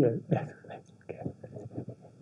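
Quiet speech: a short spoken phrase at the start, then faint murmured words and a few soft knocks.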